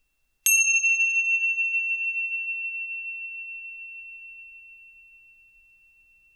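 A small meditation bell struck once about half a second in, ringing with one clear high tone that fades slowly over several seconds.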